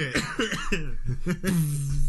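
Men laughing hard in short voiced bursts, trailing into one long held vocal sound near the end.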